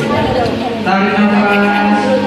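A man's voice over a microphone and PA, drawing out one long, steady held syllable for about a second in the middle. It is a breathing cue in a guided relaxation, to breathe in and breathe out ('tarik nafas, buang').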